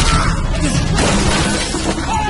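Glass shattering, with a second crash about a second in and glittering debris after each.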